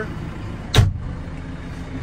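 Backhoe cab side door being pulled shut, one sharp slam about three-quarters of a second in, over a steady low hum.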